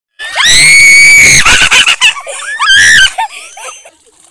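High-pitched screaming in play: one long, very loud shriek of about a second, then a few short cries and a second shriek around three seconds in.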